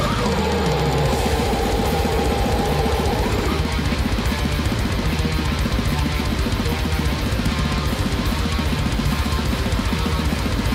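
Death metal track playing, with distorted guitars over a drum kit; a sustained guitar melody note in the first few seconds gives way to dense, steady drumming.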